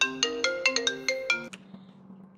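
A FaceTime Audio call's phone ringtone: a quick melodic run of about a dozen bell-like notes that stops about one and a half seconds in, leaving a faint steady low hum.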